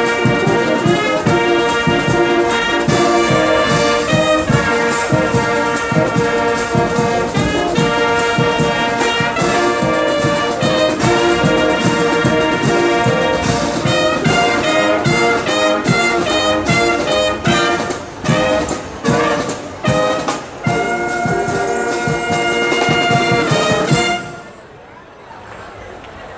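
A marching band's brass section (trumpets and trombones) plays a loud piece in full chords. In the last few seconds it plays short punched chords with brief gaps between them, then holds a final chord that cuts off at the very end.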